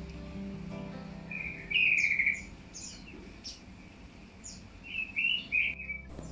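Birds chirping: a series of short, high chirps, with louder warbling calls about two seconds in and again near the end, over faint background music.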